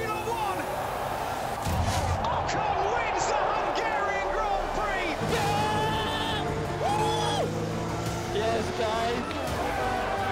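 Excited shouting and cheering voices over background music, in celebration of a race win.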